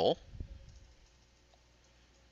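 The tail of a spoken word at the very start, then a few faint computer keyboard clicks and a soft low thump over low room noise.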